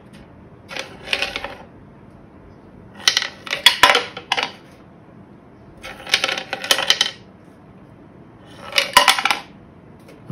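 Coins dropped one at a time into the top of a wooden toy piggy bank, clicking and clattering down its wooden ledges. Four runs, each a quick rattle of about a second.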